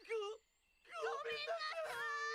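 Anime voice acting: a character crying out in a high, whining voice while apologising, a short cry and then a longer wavering wail that ends on one held note.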